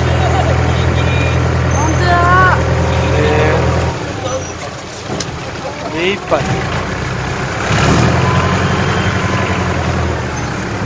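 A small boat's engine running with a steady low drone, throttled back suddenly about four seconds in as the boat comes in to the jetty, then opened up again a little before eight seconds.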